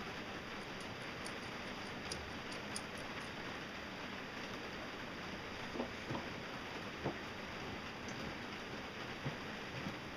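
Faint steady hiss with a few light clicks early on and a few soft knocks around six and seven seconds in, from hands fitting a metal piece onto the end shaft of a homemade PVC-drum foam grinder.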